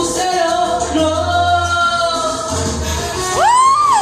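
A woman singing into a microphone over a karaoke backing track with a steady beat. About three and a half seconds in, a voice slides up and holds a loud high note.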